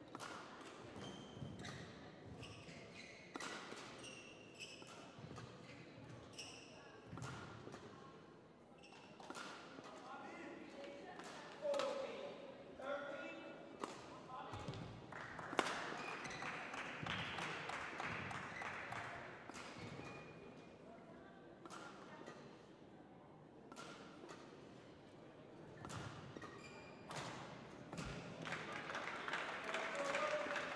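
Badminton rally: sharp racket strikes on the shuttlecock at irregular intervals, with court shoes squeaking on the hall floor and footfalls between them.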